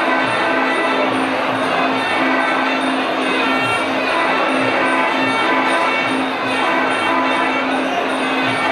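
Traditional Muay Thai fight music (sarama): a reedy Thai oboe (pi chawa) plays over a steady beat of hand drums and small ching cymbals ticking at an even pace.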